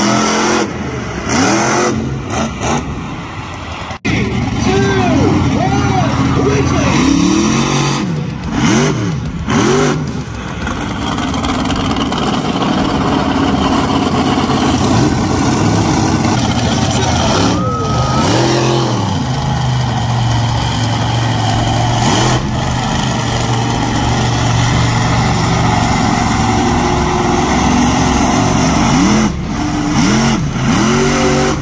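Monster truck engines run hard under a steady drone. Repeated throttle blips rise and fall in pitch, several in the first ten seconds and another about eighteen seconds in.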